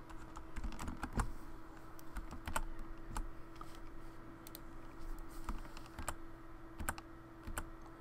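Computer keyboard keystrokes and clicks at irregular intervals, a shortcut such as Ctrl+L pressed again and again to simplify a vector path, over a faint steady hum.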